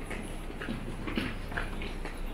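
Footsteps of a crowd walking on a hard floor: short, irregular clicks of shoes, over a steady low hum.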